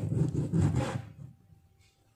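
Kitchen knife sawing through a small citrus fruit and onto a plastic cutting board, a short rough rubbing sound lasting about a second.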